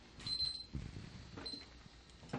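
A quiet pause holding faint room noise and two brief, faint, high-pitched electronic beeps.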